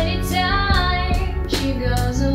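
Female vocalist singing a bending, held line over a small band of drum kit, bass guitar, acoustic guitar and piano, with a drum hit about one and a half seconds in.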